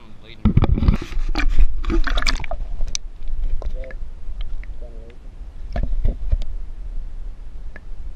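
Water splashing as a bass held by the lip and the camera are plunged under the pond surface, then the muffled sound of the camera underwater: a steady low rumble with scattered clicks as the fish is released.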